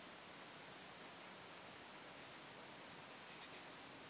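Near silence with a steady faint hiss, and a few soft scratches of a watercolour brush dabbing on paper about three and a half seconds in.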